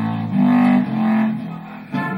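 Short music sting between TV show segments: three held low notes, the second coming in about a third of a second in and the third just under a second in, fading out shortly before the end.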